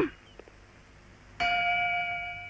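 A single bell-like chime strikes about one and a half seconds in and rings on with a steady, slowly fading tone.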